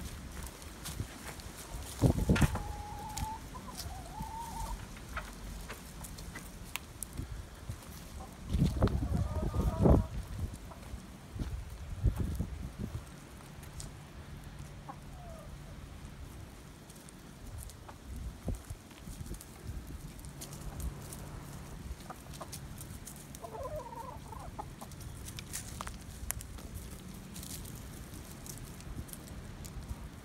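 Domestic hens clucking, with a few drawn-out calls, the loudest about two seconds in and around ten seconds in, along with a few knocks.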